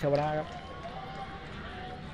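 A male commentator's voice stops about half a second in. Then comes the steady, low ambient noise of a football stadium, with faint distant voices in it.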